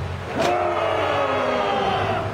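Several people yelling together in long, drawn-out, overlapping cries, with a sharp click about half a second in just before one strong cry rises and falls.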